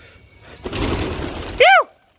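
Pigeons' wings clattering in a burst of flapping as they take off, starting about half a second in. Near the end a short, loud rising-then-falling call cuts through, then the sound stops abruptly.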